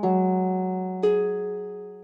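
Piano-style keyboard music made from a protein's amino-acid sequence: two chords struck about a second apart, each with a low note and higher notes, ringing and fading before the next. Each strike stands for one amino acid of the sequence.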